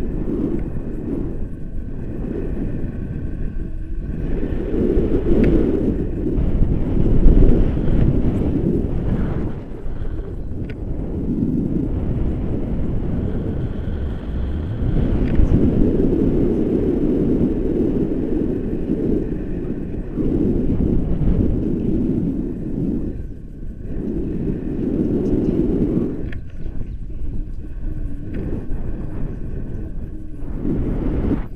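Airflow buffeting the camera microphone during a tandem paraglider flight: a loud, low rumble that swells and eases in gusts every few seconds.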